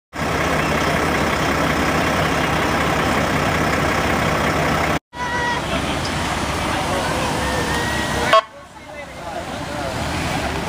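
Parade street noise: a semi tractor's diesel engine running close by under crowd voices. The sound drops out briefly about halfway, a short high tone sounds just after, and a sharp click just past eight seconds gives way to quieter voices.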